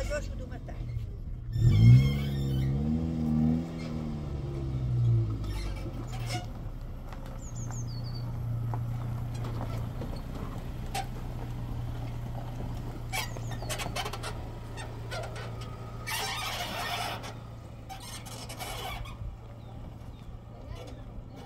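Small pickup truck engine starting: a loud surge about two seconds in that rises and then falls in pitch over a few seconds, then settles into a steady low running hum. There is a brief noisy burst about sixteen seconds in.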